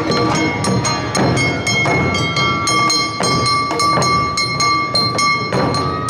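Awa odori festival band: large odaiko drums and a hand-held kane gong striking a brisk, steady beat, with a long held high note above it.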